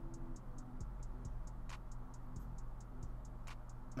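Quiet background music from a football highlights compilation: sustained low notes under a quick, even, light ticking beat like a hi-hat.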